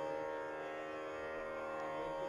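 Tanpura drone: its open strings sounding a steady, unbroken drone rich in overtones.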